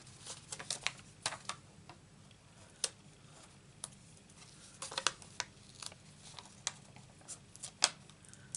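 Hands handling paper and a sheet of foam adhesive dimensionals on a craft desk: scattered light clicks, taps and crinkles at irregular intervals, over a faint steady hum.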